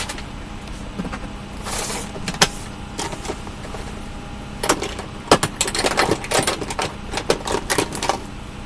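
Rummaging through makeup products: plastic cases and containers clicking and clattering against each other. A few separate clicks come first, then a dense run of clatter over the second half.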